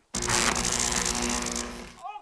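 A loud, harsh electric buzz, like an electric-shock sound effect. It cuts in suddenly and stops after about a second and a half.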